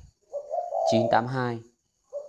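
Spotted dove cooing: a low, held coo note lasting about half a second, with a man's voice following it.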